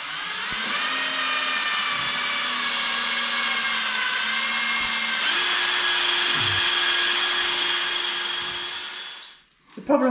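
Cordless drill drilling without hammer action in one long run. Its motor whine rises as it spins up, jumps to a higher speed a little past halfway, then winds down and stops just before the end.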